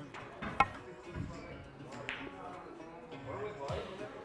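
A snooker shot: one sharp click of snooker balls about half a second in, then a few quieter knocks, over background music with a singer.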